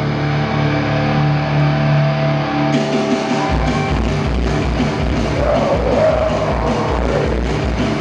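Live deathcore band playing at full volume, with distorted electric guitar and bass. For the first three and a half seconds the band holds sustained chords, then the drums and a chugging riff come in with steady, evenly spaced low kick hits.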